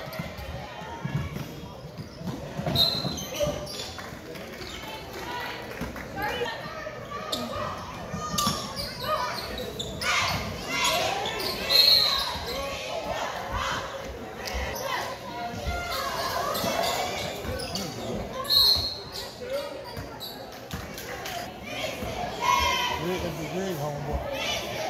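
Basketball dribbled and bouncing on a hardwood gym floor during play, the thuds echoing around a large gymnasium, with players' and spectators' voices calling.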